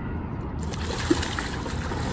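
A large hooked muskie thrashing in shallow water at the bank as it is grabbed by hand, splashing water, starting about half a second in.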